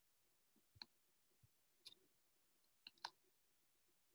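Near silence in a small room, broken by four faint, short clicks, the last two in quick succession.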